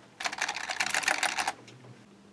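Rapid typing on a computer keyboard, a quick run of keystrokes entering a login password, which stops about a second and a half in.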